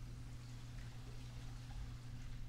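Steady low hum under a faint hiss: room tone of a quiet recording setup, with no distinct event.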